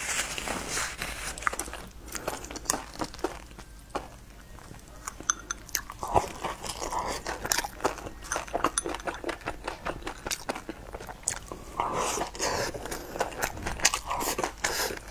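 Close-miked eating sounds of someone chewing sticky rice: many quick, irregular wet smacks and clicks, easing off briefly about four seconds in.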